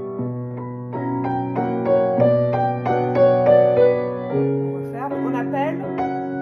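Grand piano playing a waltz: a melody in the right hand over held bass notes that change about every two seconds.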